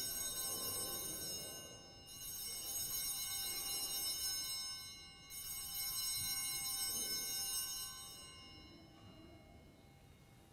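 Altar bells rung at the elevation of the consecrated host: a peal of small bells that is already ringing as the host is raised. It sounds again about two seconds in and again about five seconds in, each time ringing out, and fades away near the end.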